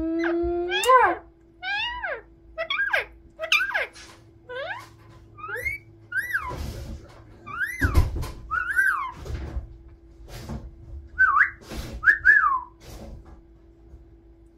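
Indian ringneck parakeet giving a string of short whistled chirps, about one a second, each a quick sweep in pitch, some falling and some rising then falling. A faint steady hum runs underneath, and a few short noisy bursts come in the middle.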